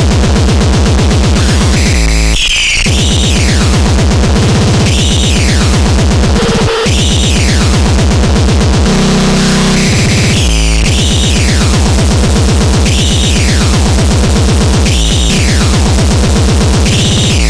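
Loud speedcore track: a very fast, distorted kick-drum pattern under arching synth sweeps that repeat about every two seconds. The kicks drop out briefly a couple of seconds in and again for about two seconds midway, where a sustained low tone takes over.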